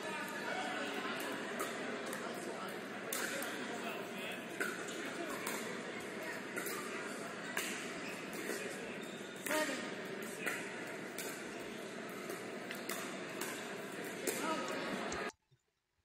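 Pickleball rally in a large indoor hall: sharp pops of paddles striking the plastic ball, roughly once a second, over background voices. The sound cuts off suddenly shortly before the end.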